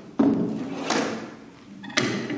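A wooden-handled cant hook being picked up off a table: a sudden thunk as it is lifted, another knock about a second later, and more handling near the end.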